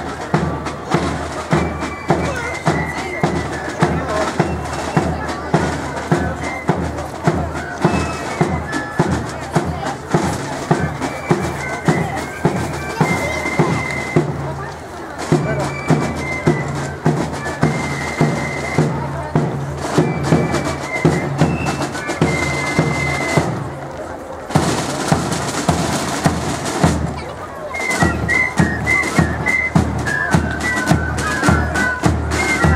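Foot Guards corps of drums playing a march: side drums keep a steady beat about twice a second under a high flute melody.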